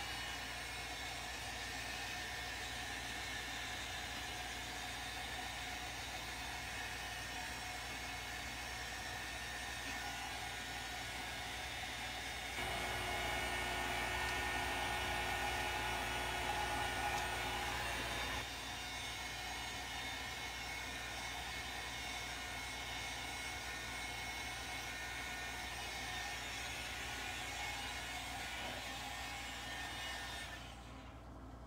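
A small handheld craft heat gun blowing hot air steadily to dry acrylic paint and wax stain on wooden cutouts. It gets louder for about six seconds in the middle, then settles back, and it cuts off at the very end.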